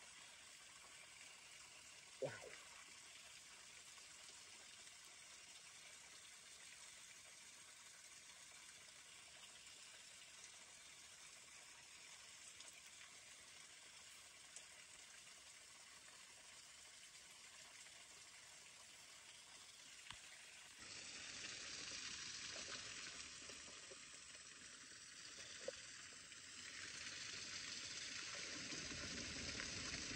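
Near silence with a faint steady hiss, broken by one short sound about two seconds in. About two-thirds of the way through, a louder steady hiss sets in, eases briefly, then swells again near the end.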